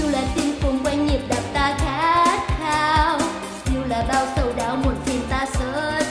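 A woman singing a Vietnamese pop ballad in a low female key, with vibrato on held notes, over a karaoke backing track with a steady drum beat.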